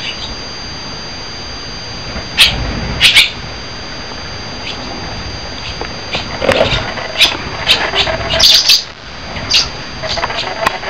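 A small bird inside an empty room giving short, sharp, loud chirps: two calls about two and a half seconds in, then a quick string of them from about six seconds to near the end.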